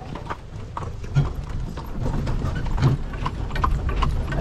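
A carriage horse's hooves clip-clopping on the road as it pulls the carriage, a string of irregular knocks over the low rumble of the moving cart.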